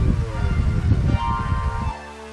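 Wind buffeting the microphone, a loud, gusty low rumble, mixed with background music that carries falling tones. Just before the end the rumble cuts off and only the music remains.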